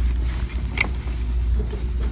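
A steady low rumble with two light clicks of clothes hangers being handled, one about a second in.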